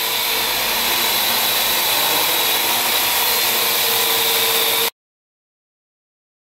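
Parrot AR.Drone quadcopter flying close by, its four rotors giving a steady whirring whine. The sound cuts off suddenly about five seconds in.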